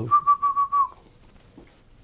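A man whistling one short, high, steady note that dips slightly in pitch and stops before a second is out.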